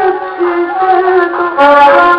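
Arabic orchestral music from a 1963 live concert recording: an ensemble holding sustained melody notes, moving to a new note about half a second in and again near the end, with a dull top end typical of an old recording.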